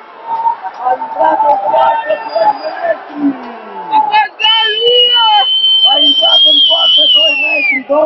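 A referee's whistle blown in one long blast of about three seconds, starting about halfway through and sliding down in pitch as it dies away near the end. Crowd voices in the hall come before it.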